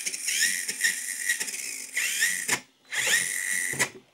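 Brushless motor and drivetrain of an RC4WD Miller Motorsports Rock Racer, wheels spinning in the air, revved in high gear in short throttle blips: a whine that rises in pitch with each blip. It cuts off sharply twice, about two and a half seconds in and near the end, as the full drag brake stops the motor on letting off the throttle.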